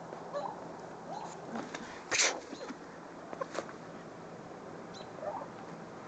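Goats grazing close by: faint tearing and munching of grass, with one short, sharp burst of noise about two seconds in and a smaller one a second and a half later.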